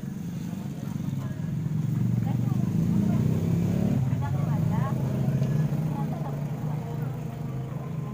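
Indistinct crowd chatter over a steady low droning hum.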